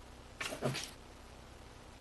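A pause in a meeting room: low room tone with a steady faint hum, and one brief faint sound about half a second in.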